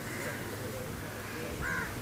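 A bird calling once near the end, a short harsh call over a faint steady background hiss.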